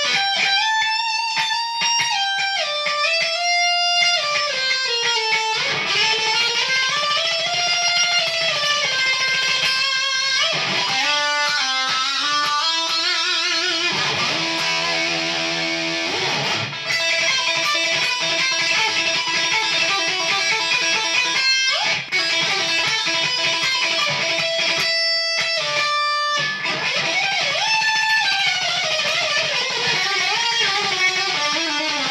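Electric guitar played as a shred lead with only one fretting finger: fast runs with notes sliding up and down the neck, a stretch of rapidly repeated notes near the middle, and a few brief breaks. By the player's own verdict, the playing is only a rough attempt at shredding.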